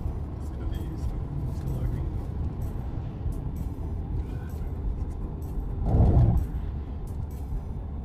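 Steady low road rumble of a car driving on a highway, heard from inside the cabin, with a brief louder surge about six seconds in.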